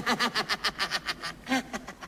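Laughter: a fast, even run of 'ha' beats, about six a second, that trails off about a second and a half in.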